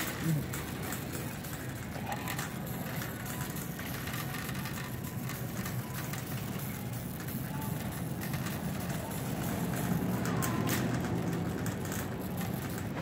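Wire shopping cart rolling across a hard store floor: a steady low rumble from its wheels, a little louder near the end.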